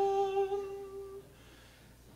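Male a cappella vocal ensemble holding a steady sustained chord that fades out a little over a second in, leaving a short near-silent pause.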